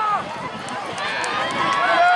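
Football spectators shouting and yelling, many voices overlapping, growing louder about a second in as the play develops.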